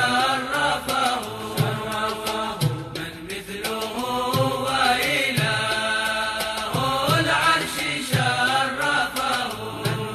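Chanted devotional vocal music: a voice singing in long, bending phrases over a low beat that comes a little more than once a second.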